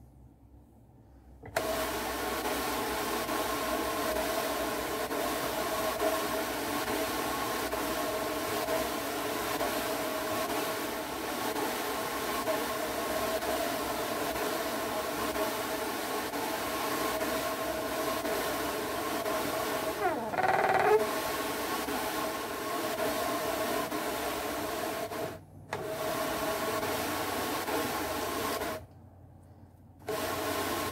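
Electric drum carder running: a steady whirring hum at a fixed pitch as the drum turns. It starts about a second and a half in, cuts out for a moment about five seconds before the end, and stops again a second before the end. About two-thirds of the way through there is a short, louder sound that falls in pitch.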